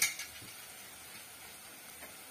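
A short metallic clink of a steel utensil against the aluminium pot at the start, then a faint, steady sizzle of brinjal pieces frying in oil.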